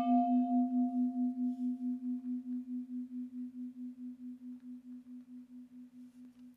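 A single bell-like note ringing and slowly fading, with a wavering pulse about five times a second; its brighter overtones die away within the first few seconds.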